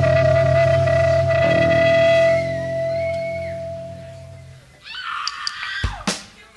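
A punk band ends a song live: electric guitar and bass hold a final chord with a steady ringing guitar tone, fading and then cut off about four and a half seconds in. Brief voices follow, and a sharp thump near the end.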